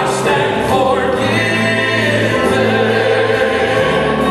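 Southern gospel male quartet singing in harmony into microphones, holding long sustained notes.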